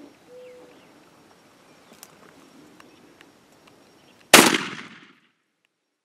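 A single shotgun shot fired at a wild turkey gobbler, sudden and loud about four seconds in, its echo trailing off within about a second.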